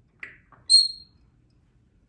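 African grey parrot giving a short rough note, then one loud, high, steady whistle lasting about a third of a second, a little under a second in.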